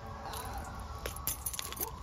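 Footsteps on a woodland path, shoes crunching and crackling through dry leaf litter and twigs.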